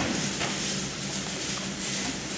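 Wrestling-room noise of wrestlers drilling on the mats: faint scuffing and a few light knocks over a steady low hum.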